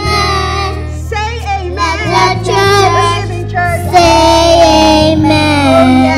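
A group of children singing a worship song into microphones, holding long notes, over a sustained low instrumental accompaniment that changes chord every second or two.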